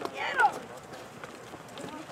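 Distant shouts on the football field: one drawn-out, falling shout right at the start, then fainter calls and a few faint sharp knocks.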